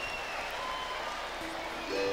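Audience applause: a steady wash of clapping, with a few faint notes from the samba band coming in near the end.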